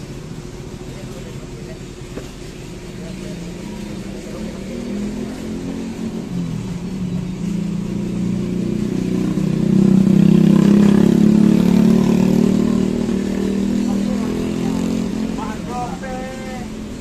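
A motor vehicle engine running close by, growing louder over several seconds, loudest about ten seconds in, then easing off.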